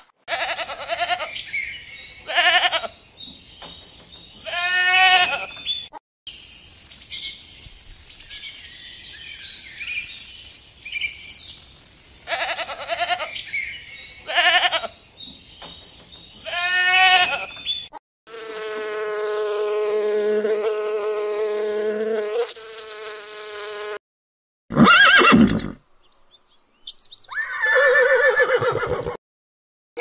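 A string of separate animal calls with short breaks between them. A rooster clucks and crows in the first few seconds, and a long, steady call comes about two-thirds of the way through.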